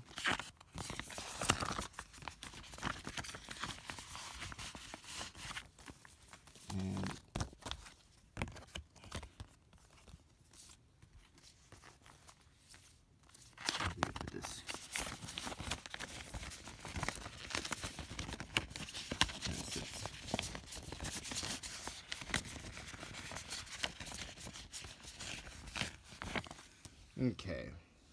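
Paper documents and clear plastic sheet protectors rustling and crinkling as they are handled and slid into binder sleeves. The sound is busy for the first several seconds, drops off for a few seconds in the middle, then picks up again until near the end.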